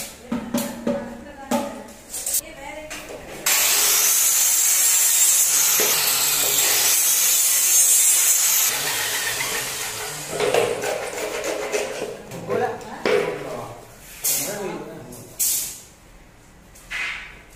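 Handheld VERX circular saw cutting through a hollow PVC frame profile: the blade comes in abruptly a few seconds in, cuts with a loud, high-pitched noise for about five seconds, then winds down over several seconds. Knocks and clatter of the PVC pieces being handled come before and after the cut.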